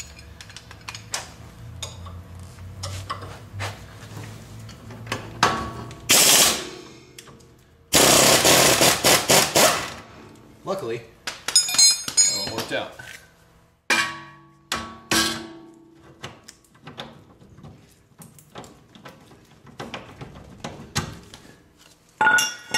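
Tools working the lower ball joint bolt on the wishbone: clicks and knocks of steel tools on the suspension, a short rattling burst about six seconds in and a longer one of about two seconds starting around eight seconds, then ringing metal clinks as the bolt comes free.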